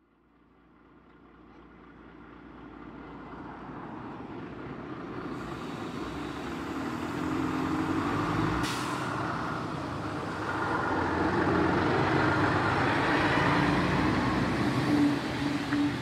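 Heavy loaded logging truck's diesel engine running as it drives past, with tyre and road noise; the sound fades in gradually from silence over the first several seconds. A brief hiss comes about halfway through.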